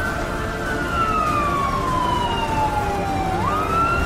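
Emergency vehicle siren wailing: a held tone that slowly falls over about three seconds, then sweeps quickly back up near the end, over a steady low noise.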